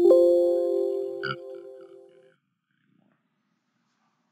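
Computer alert chime of a 'done' message box: one tone that starts suddenly and rings down over about two seconds. A brief short sound comes about a second in.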